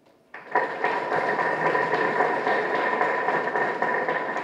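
Steady room noise of a hall with a faint high hum running through it. It cuts in suddenly just after the start.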